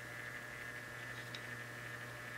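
Low steady hum with a faint hiss: room tone, with one tiny tick a little past the middle.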